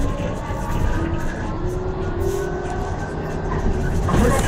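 Trolleybus in motion, heard from inside: the electric traction motor's whine, rising and falling a little in pitch, over the steady low rumble of the ride.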